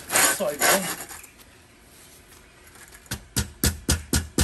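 Quick, evenly spaced taps, about four a second, starting near the end: a hand tool knocking on a steel recessed paving tray to tap it down level into its mortar bed.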